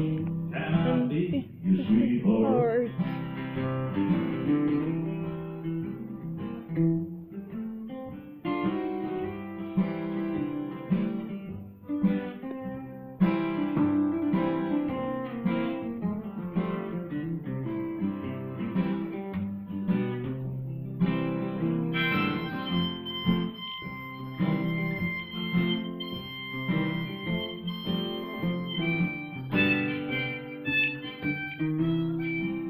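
Two acoustic guitars strumming and picking through an instrumental break of a country-folk song, with a harmonica playing held, bending melody notes over them.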